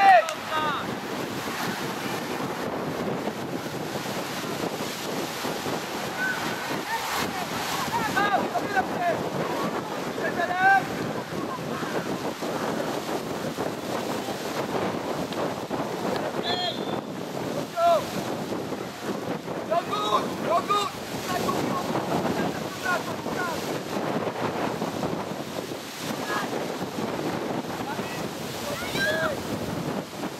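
Wind rushing over the microphone in a steady roar, with brief distant shouts and calls from players on the pitch breaking through now and then.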